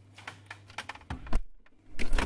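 A fridge door swung shut on a camera sitting inside: a run of light clicks and knocks, then a heavy thump about a second and a half in.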